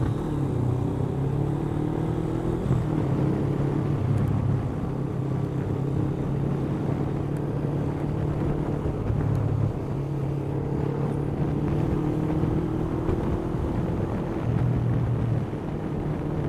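Honda CBF500 parallel-twin motorcycle engine running at a steady cruising pace, its note rising and falling slightly, over road and wind noise, heard from on the bike.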